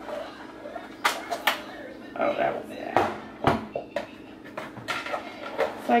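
Handling noise from a black plastic storage organizer being moved and set down: a few sharp plastic knocks and clacks, with some rustling between them.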